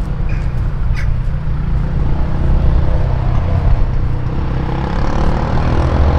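Wind buffeting the microphone outdoors: a loud, unsteady low rumble throughout, with a couple of faint short high chirps near the start.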